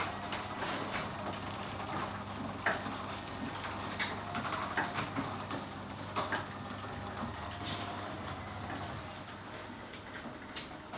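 Electric garage door opener raising a sectional overhead garage door: a steady motor hum with scattered clicks and rattles from the door panels and rollers.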